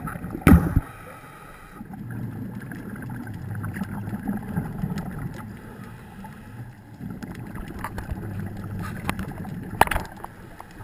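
Muffled underwater noise as heard through a camera's underwater housing: a steady low rumble that swells and fades. There is a loud knock about half a second in and a few sharper clicks near the end.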